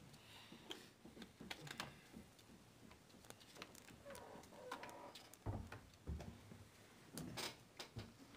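Quiet meeting-room tone with scattered small clicks and rustles of paper handling at the table, and two dull low thumps about five and a half and six seconds in.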